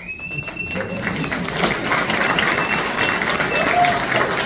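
Audience applauding and cheering, with a few high-pitched calls over the clapping; the applause starts suddenly and swells over the first second or two.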